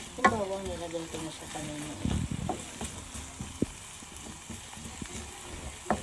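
Chicken wings and sliced onions sizzling as they are sautéed in a nonstick frying pan, with a few sharp knocks of a wooden spatula against the pan.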